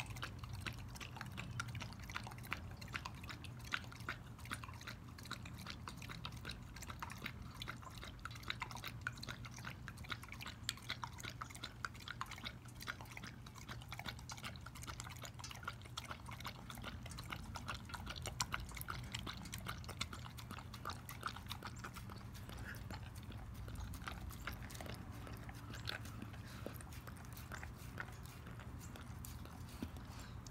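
A dog lapping goat milk from a stainless steel bowl: a fast, steady run of wet tongue clicks against the liquid and the metal.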